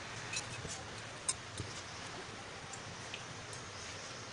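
Faint steady hiss with a few light clicks as cooking oil is spooned into a non-stick frying pan on a gas stove.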